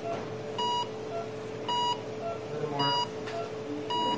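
Electronic heart-monitor style beeps, one short beep about every second with a fainter blip between each pair, over a steady hum.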